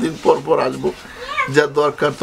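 Speech: voices talking in a playful, sing-song way, with a high, wavering voice rising just after the middle.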